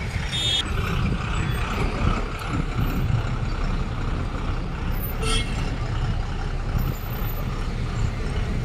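City bus driving past in street traffic with a steady low engine rumble. A brief high squeal comes about half a second in, and a short hiss about five seconds in.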